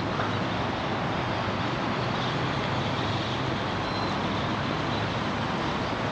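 Steady outdoor city ambience: a continuous wash of road traffic noise with no distinct events.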